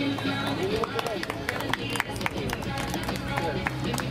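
Background music with people's voices talking over it, and scattered short sharp clicks.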